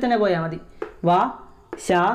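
Only speech: a man speaking in short phrases, with brief pauses between them.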